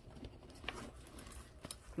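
Faint handling of small pouches and items inside a handbag, with a soft rustle and two light clicks, one about a third of the way in and one near the end.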